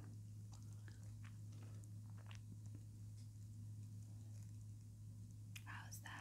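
Faint, scattered clicks and scrapes of a dental scaler worked close to the microphone, in an ASMR teeth-cleaning roleplay, over a steady low electrical hum. A short breath or mouth sound comes near the end.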